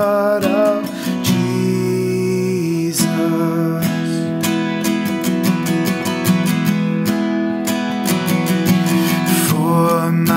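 Acoustic guitar strummed in a steady chord pattern, accompanying a hymn. A man's singing voice trails off just under a second in and comes back in near the end.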